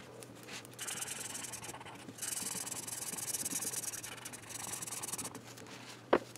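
A pen tip rubbed back and forth over a paper coloring page, a scratchy rubbing. It comes in two stretches: a short one about a second in, then a longer one from about two seconds in until past five seconds.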